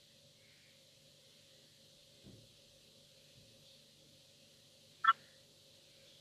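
Near silence on a video call whose audio is dropping out, with a faint low thump about two seconds in and a brief clipped fragment of a voice about five seconds in.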